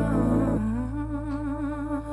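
Slow pop ballad: a woman's voice holds a wordless note with vibrato over a soft sustained bass, stepping up to a higher held note about half a second in.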